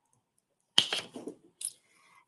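Heat transfer vinyl being picked off its carrier sheet with a weeding hook: a short crackle a little under a second in, then a few fainter ticks.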